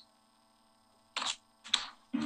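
Near silence, then a man clears his throat in one short, sharp burst about a second in, with a second brief burst just after it.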